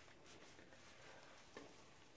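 Near silence: faint soft rubbing and light water sounds of hands scrubbing a wet Great Dane puppy's coat in a bathtub, with one small click about a second and a half in.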